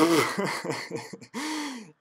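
A man laughing in several breathy, wheezy bursts, ending in a longer drawn-out note near the end.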